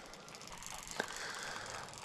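Quiet outdoor ambience, with a single faint click about halfway through.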